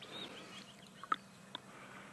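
Faint, scattered bird chirps and calls in the bush, with two short sharp notes about a second in and again half a second later.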